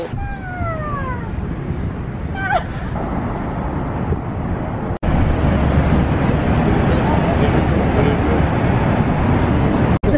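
A steady wash of background noise with a brief voice. After a sudden cut about halfway, the loud, steady rushing roar of Niagara's Horseshoe Falls, heavy in the low end.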